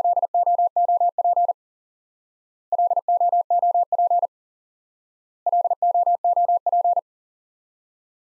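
Morse code sidetone, a single steady pitch near 700 Hz, keying the word LOOP three times at 40 words per minute. Each run lasts about one and a half seconds, with a pause of just over a second between runs.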